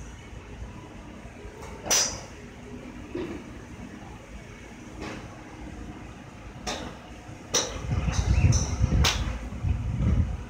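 Golf club heads striking balls at a driving range: several sharp clicks, the loudest about two seconds in, others fainter from nearby bays. A low rumble comes in near the end.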